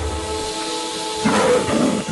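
Background cartoon score with sustained tones, and about a second and a quarter in, a short hissing growl from a cartoon cat rises over the music for under a second.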